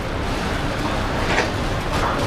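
Steady rumbling background noise of the shop, with a brief rustle of a handled panjabi (cloth garment) about one and a half seconds in.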